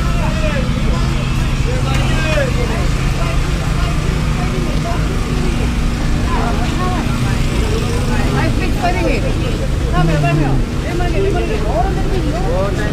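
Babble of many voices in a busy outdoor market crowd, over a dense low rumble with a steady low hum that comes and goes.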